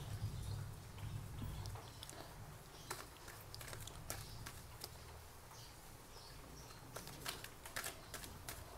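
Faint clicks and light taps of a deck of cards being handled and fanned out in the hands, with a few sharper card snaps near the end, over a low steady hum.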